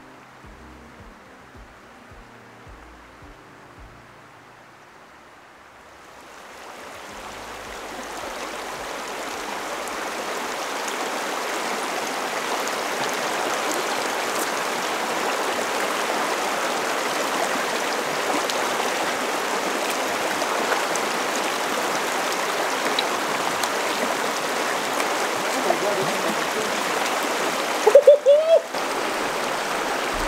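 Shallow mountain river rushing steadily over rocks, fading up about five seconds in after a stretch of soft background music. A short voice-like cry cuts in near the end.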